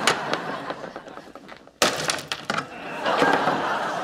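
A banana frozen hard in liquid nitrogen is smashed on a lab bench. It shatters with a sharp crack about two seconds in, followed by a few smaller clatters of brittle pieces.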